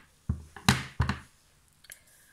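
Plastic ink pad tapped against a rubber stamp on a clear acrylic block to ink it: three short knocks in the first second, the second loudest, then a faint tick near the end.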